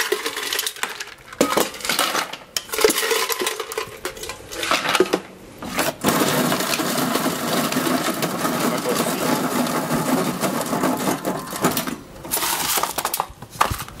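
Ice cubes clinking and clattering as they are tipped from a stainless-steel bucket into an electric ice crusher. About six seconds in, the crusher runs with a steady grinding for about six seconds, breaking the cubes into crushed ice, then stops.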